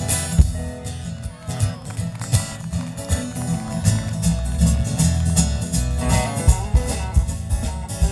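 Live country band playing an instrumental passage: acoustic and electric guitars, bass, banjo and drums with steady drum hits, no singing.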